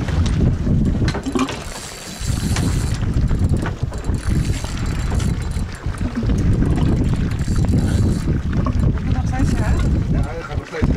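Wind buffeting the microphone, a loud uneven rumble, over the noise of a boat at sea; it eases briefly about two seconds in and again near six seconds.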